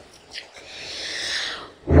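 A person's long, drawn-in breath through a demonic pitch-shifted voice effect, a hiss that grows louder for about a second, after a brief sharp sound near the start.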